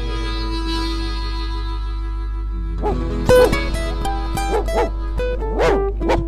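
A held chord of blues backing music, then from about halfway a dog barking and yelping in a quick string of about eight barks over the music.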